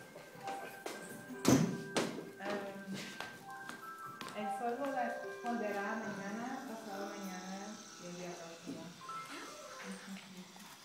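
Quiet, indistinct voices with music in the room, and a single knock about one and a half seconds in.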